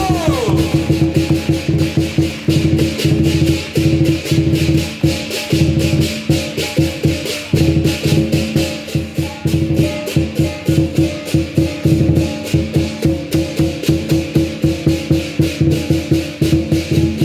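Lion dance percussion band playing: a drum beaten in a fast, dense rhythm with clashing cymbals, accompanying lions performing on high poles.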